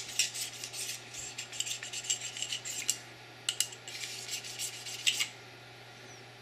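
Metal pistol parts being handled on the bench: a quick run of light clinks, scrapes and rubbing as a barrel is picked up, wiped and set among the other parts. It stops about five seconds in.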